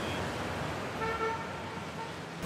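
Steady city street traffic noise with a brief, single car horn toot about a second in.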